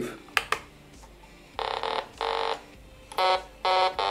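Arduino-based polyphonic synthesizer set to its sawtooth waveform, playing four short buzzy notes on its keys. Two quick clicks come about half a second in, before the first note.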